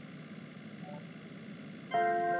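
Steady car-cabin driving noise, an even hiss, with a brief faint tone about a second in and a louder tone starting right at the end.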